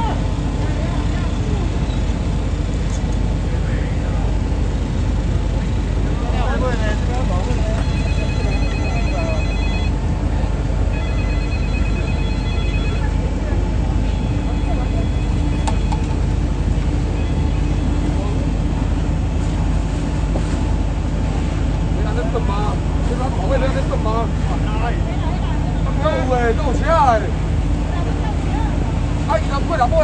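Steady low rumble of an idling engine. About eight seconds in, a phone ringtone warbles in three bursts over some eight seconds. Voices talk at times.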